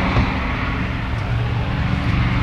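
Steady low drone of freeway traffic, passing vehicles blending into one continuous rumble.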